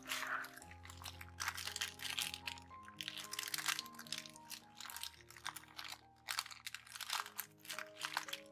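Tracing-paper pockets crinkling in many short crackles as fingers slide a sticker sheet in and out, over soft background music of slow held notes.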